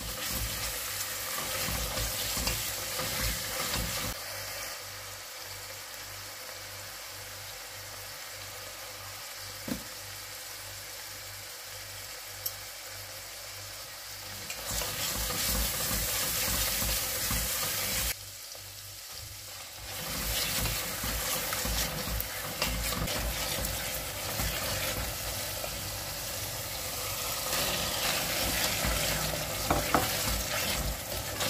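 Onion masala with garlic and ginger paste frying in oil in a stainless steel pot, sizzling steadily while a spoon stirs and scrapes through it. The stirring comes in several bouts, with quieter stretches of plain sizzling between them.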